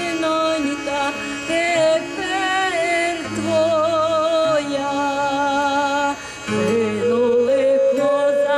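A woman singing a slow Ukrainian historical song into a microphone, amplified through a PA: long held notes with a wide vibrato and ornamented turns, over low held tones beneath.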